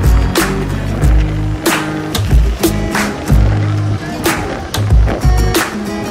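Music track with a steady beat: deep kick-drum thumps and sharp hits repeating evenly over held tones.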